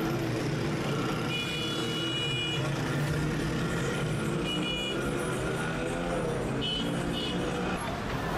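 Street traffic: vehicle engines running steadily, with short high beeps about three times.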